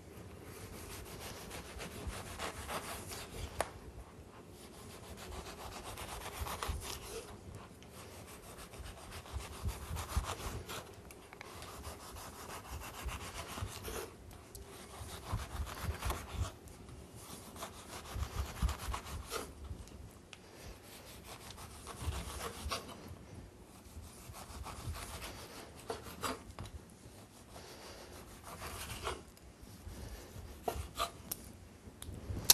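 A kitchen knife cuts the peel off a pink grapefruit and slices out its segments on a wooden cutting board. The cutting comes in repeated stretches of a few seconds each with short pauses between them, and small knocks of the blade on the board are heard here and there.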